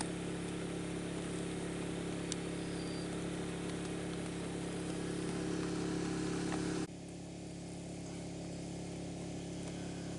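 A small engine running steadily with a low pitched drone. The sound drops in level and changes abruptly about seven seconds in, then continues just as steadily.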